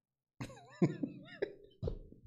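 A man's short bursts of laughter: about five chuckles, each starting sharply, with a wavering pitch.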